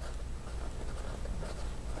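Edison Menlo's steel medium fountain-pen nib writing in cursive on a Rhodia pad: a faint, soft scratch of nib on paper as a word is written.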